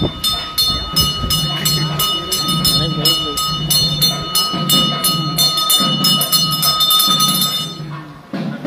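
Temple bell rung rapidly, about three to four strikes a second, its ringing tones held steadily and stopping shortly before the end. Voices and a low pulsing beat sound beneath it.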